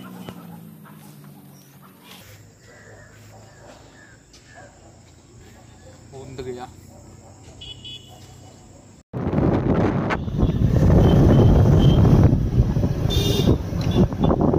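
After a quiet stretch with a faint steady high tone, a loud rush of wind on the microphone and road noise from a moving motorcycle cuts in suddenly about nine seconds in.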